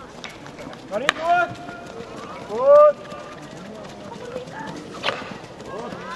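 Shouts and calls of players and coaches during a field hockey match, the loudest a single drawn-out shout about midway. There are two sharp clacks of stick on ball, about a second in and about five seconds in.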